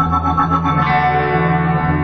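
Live rock band music: electric guitar over steady low bass notes, with a new chord coming in a little under a second in.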